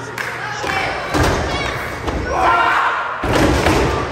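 Two heavy thuds of wrestlers' bodies hitting the ring canvas, about two seconds apart, with spectators shouting over them.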